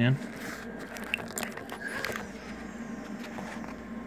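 A few small clicks and scrapes in the first two seconds as a mains power cord is pushed into the inlet of an HP DPS-1200FB server power supply and handled, over a faint steady hum.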